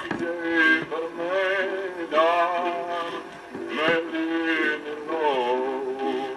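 A recorded song: a male singer holding notes with a wavering vibrato, in phrases of about a second each, over instrumental accompaniment.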